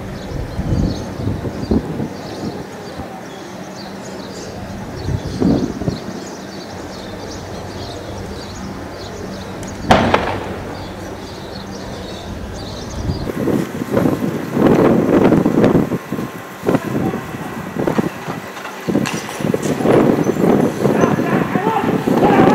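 Outdoor street sound with intermittent voices, broken about ten seconds in by a single sharp bang; from about thirteen seconds on the voices and commotion grow louder and busier.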